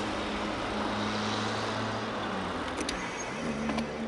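Rushing wind and tyre noise from a bicycle ridden along an asphalt road, picked up by a bike-mounted action camera, under a low steady hum that drops in pitch about two and a half seconds in. A few sharp clicks come near the end.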